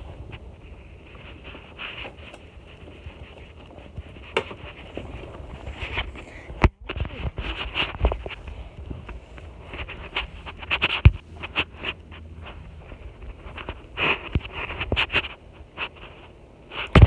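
Handling noise from a phone held close and moved around: irregular rustles, scrapes and knocks, with one sharp click about six and a half seconds in.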